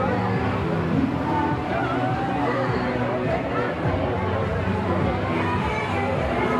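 Fair crowd walking and chatting, many voices blending into babble, with music playing in the background.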